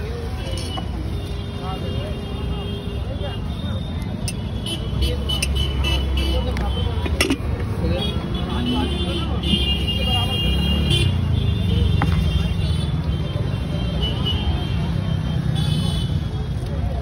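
Street noise: a motor vehicle engine running close by, its low rumble growing louder about five seconds in, over background voices and a few light knocks.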